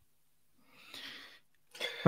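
A short, faint breath-like exhale from a person on a microphone about a second in, in a near-silent pause.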